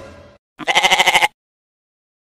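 A single short, quavering sheep-like bleat, dropped in as a comedy sound effect. It comes about half a second in, after the fading tail of a swish.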